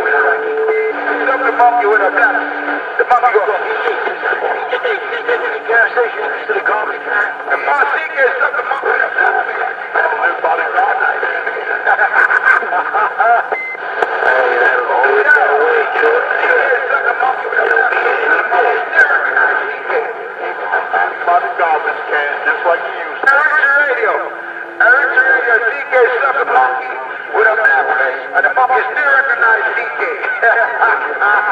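Indistinct voices talking continuously over a thin, phone- or radio-quality line, too muddled for the words to be made out.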